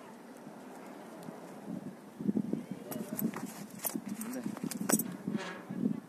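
Indistinct low voices, with several sharp clicks in the second half.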